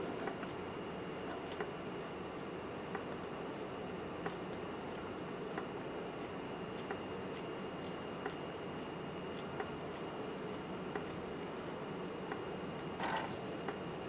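Quiet, steady room tone with a faint high tone and small ticks at an even pace, about one every second and a third.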